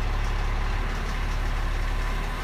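Cummins diesel engine of a 2017 Mack truck idling steadily, heard from inside the cab, while a forced diesel particulate filter regeneration is being started.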